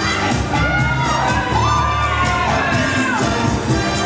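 Cha-cha music with a steady beat playing over a hall, while spectators cheer and let out long drawn-out calls that rise, hold and fall.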